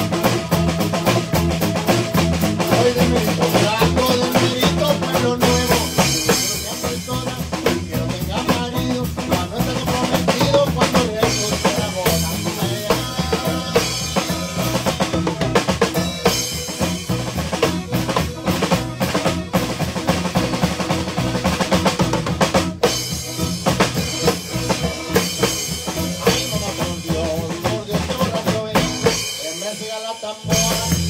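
Live norteño band playing an instrumental zapateado, led by a drum kit keeping a fast, even beat over bass and other instruments, with a brief break right at the end.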